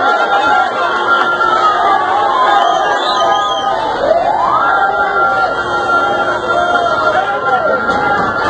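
A siren wailing over a crowd's many raised voices: its tone falls during the first couple of seconds, then about halfway through sweeps quickly back up and holds a steady high note.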